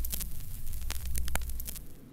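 Room tone: a steady low hum with scattered light clicks and crackles, with no music or voice.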